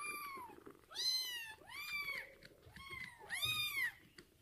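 Young kittens meowing, about five thin high-pitched cries in a row, each rising then falling. These are typical of unfed kittens crying for their milk while one littermate is bottle-fed.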